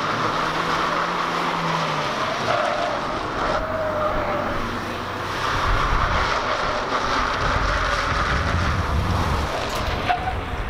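Small hatchback slalom car driven hard through a cone course, its engine note rising and falling as it accelerates and brakes between the cones.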